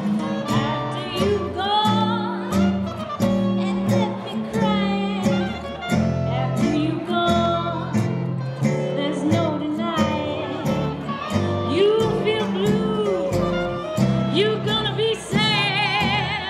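Live gypsy jazz combo: acoustic guitars strumming a steady, evenly spaced rhythm over upright bass notes, with a melody line above. A woman's singing voice with vibrato is heard near the end.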